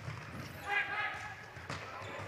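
Floorball game sound in a sports hall: a faint shout from the court about half a second in, and a few light taps of stick, ball or shoes on the court floor.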